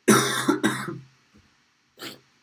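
A man coughing: two quick, loud coughs within the first second, with a short, quieter one at the very end.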